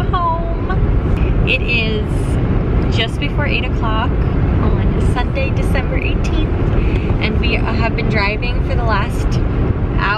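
A woman talking inside a moving car, over a steady low road-and-engine rumble in the cabin.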